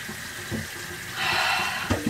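Kitchen faucet running into a stainless steel sink, the water getting louder for under a second near the end, with a faint knock or two.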